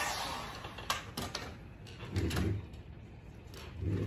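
Heat gun running, then dying away as it is switched off. A few light clicks and taps follow as a stir stick works in a plastic cup of epoxy resin, with a short low sound about two seconds in.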